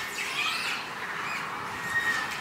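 Birds calling, with a few short gliding calls about half a second in and a held, whistle-like note near the end.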